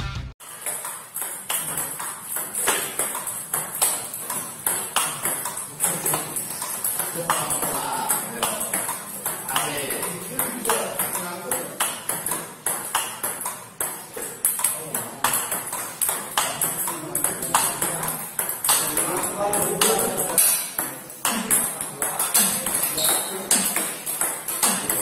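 Table tennis balls struck in a fast multiball forehand drill: a quick, steady run of sharp clicks as balls come off the bats and bounce on the table, several a second.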